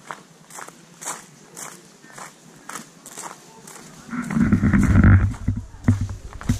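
Footsteps on a gravel path at a steady walking pace, about two steps a second. About four seconds in, a loud low rumble lasting just over a second covers them.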